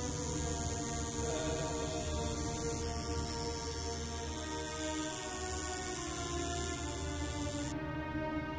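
Coil tattoo machine buzzing steadily at one pitch as it works the skin, with background music underneath.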